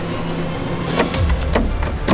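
A locked emergency exit door being tried and not opening: sharp clicks from the handle about a second in, then heavy low knocks as the door is pushed against its lock.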